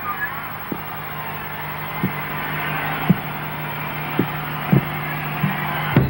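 Arena crowd cheering between songs, a steady roar of noise that slowly swells. Under it runs a low steady hum, with a few scattered low thumps.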